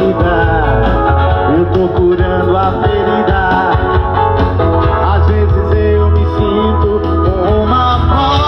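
Live band music: a man singing into a microphone over electric guitar and a steady low accompaniment.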